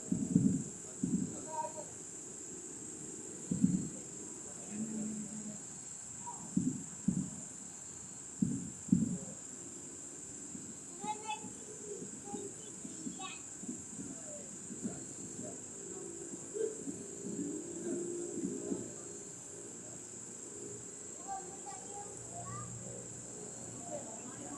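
Distant fireworks: irregular dull booms, most of them in the first ten seconds and fewer and weaker after that, over a steady high-pitched hiss.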